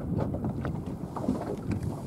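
Wind buffeting the microphone over a low rumble of boat and water noise, with a few small knocks.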